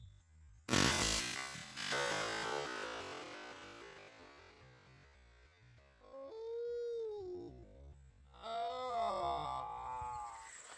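A single .44 Special round fired from a Henry Big Boy lever-action carbine: a sharp report about a second in that dies away over the next few seconds. Later come two drawn-out moaning tones that bend up and down in pitch.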